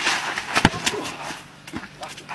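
A crocodile lunging through the grass and snapping its jaws shut: one sharp, loud clap about two-thirds of a second in, with rustling and a few smaller knocks around it.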